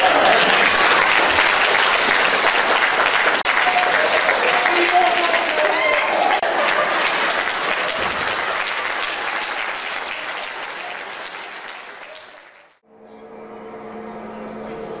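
Audience applauding, with a few voices standing out in it, fading over the last few seconds and dropping out near the end, after which a faint low steady hum remains.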